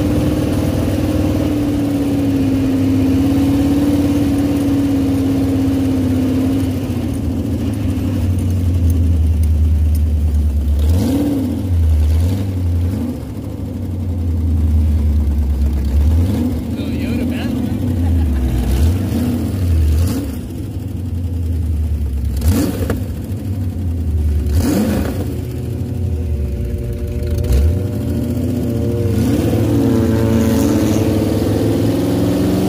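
Sand rail engine running under way, with tyres and wind; at first it holds a steady drone, then from about a third of the way in it revs up and down again and again as the throttle is worked.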